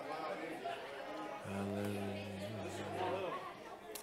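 Church congregation chatting and greeting one another all at once, many voices blending into a hubbub in a large hall. From about one and a half seconds in, a low steady tone is held for nearly two seconds under the chatter.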